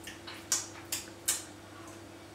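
Three short, soft clicks about half a second apart as a spoonful of yogurt is tasted, over a faint steady hum.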